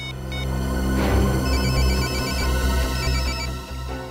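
Mobile phone ringtone, an electronic trilling ring that comes in twice from about a second and a half in, over a steady dramatic music score. It is the called phone ringing somewhere close by.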